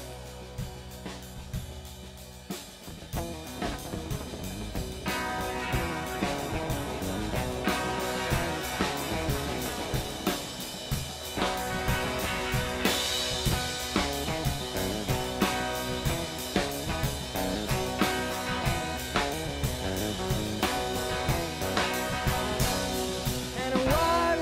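Live instrumental from an electric guitar in open G tuning and a drum kit keeping a steady beat. The playing fills out about five seconds in, and the cymbals brighten about halfway through.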